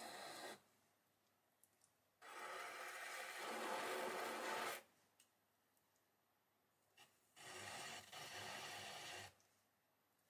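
A thin metal tool scraping wet stoneware clay from the base of a pot spinning on a potter's wheel, cleaning the outside bottom before trimming. There are three scraping passes: one ending about half a second in, a longer one from about two to five seconds, and one near the end.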